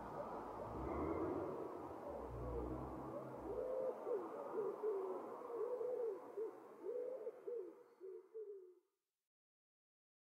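A bird cooing faintly in a run of short rising-and-falling notes, over a low rumble in the first few seconds; the sound cuts to silence about nine seconds in.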